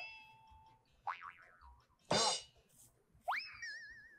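Cartoon-style comedy sound effects from an edited variety show: a short chime ringing out, a quick rising whistle, a brief noisy burst about two seconds in, and near the end a rising whistle that turns into a wobbling 'boing'.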